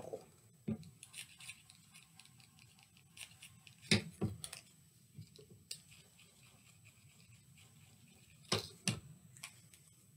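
Quiet handling sounds of drawing with a marker on a small paper cup: scattered light clicks and taps, with two louder clicks near the end.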